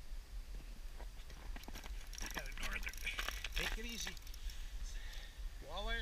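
Small spinning reel on an ice-fishing rod clicking and ratcheting as it is worked, a quick run of mechanical clicks through the middle, with a voice near the end.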